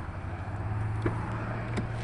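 Steady low hum of a motor vehicle, with a couple of faint clicks about a second in and near the end.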